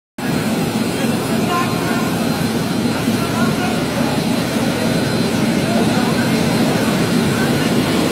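Steady low drone of a river passenger launch's engines, with people talking over it.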